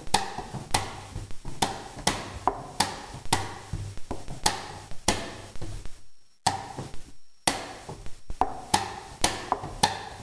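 Wooden chess pieces knocking on the board and chess clock buttons being slapped in quick alternation during a blitz game, about two knocks a second. There is a short break about six seconds in, then a faster run of knocks near the end.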